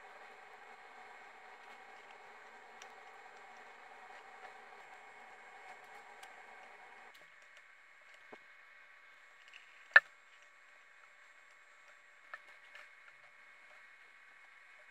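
Quiet bench room tone, a faint steady hiss, with a few light clicks and one sharp click about ten seconds in, from tools handled while soldering a small circuit board.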